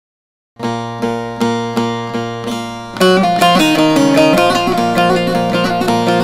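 Instrumental intro of a Turkish folk song on bağlama (saz): starting about half a second in, evenly repeated plucked strokes, a little over two a second, ring over a steady low drone; at about three seconds the playing turns louder and fuller, with a moving melody.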